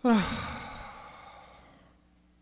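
A man's loud, drawn-out "ahh" sigh into a microphone, falling in pitch and trailing off breathily over nearly two seconds.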